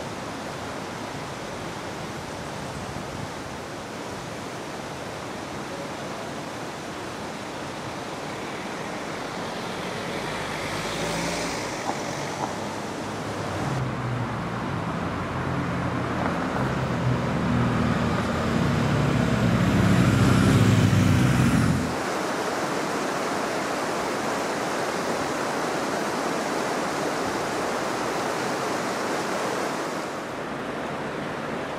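Steady outdoor rushing noise throughout. A motor vehicle engine builds up from about halfway through, is loudest shortly before it cuts off suddenly about two-thirds of the way through, and the steady rushing carries on afterwards.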